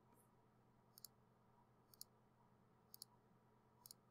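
Faint computer mouse clicks, about once a second, each a quick pair of ticks from the button being pressed and released, over near silence.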